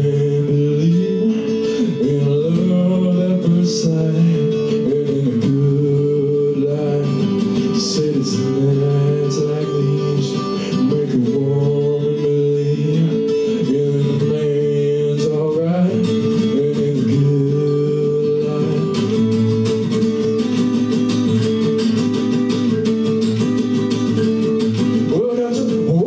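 A solo acoustic guitar playing a song live, with a man singing over it in phrases.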